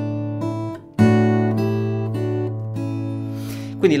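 Acoustic guitar played fingerstyle: one chord rings and fades out, then about a second in another chord is plucked and left ringing while a few melody notes change over it.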